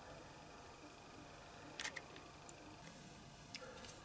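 Faint room tone with a few short, light clicks and taps, the loudest a little under two seconds in and two smaller ones near the end.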